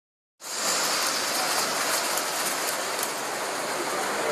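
After a split second of silence, the steady, even noise of a crowded exhibition hall comes in, with model trains running on their layouts.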